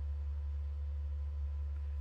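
A steady low hum with faint, steady higher tones above it, unchanging throughout.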